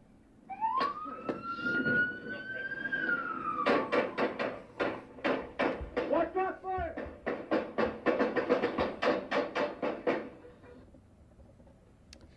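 Police body-worn camera audio played through a TV speaker: a police car siren winding up and down, then a fast, even series of sharp bangs, about four or five a second, for some six seconds, with shouting among them.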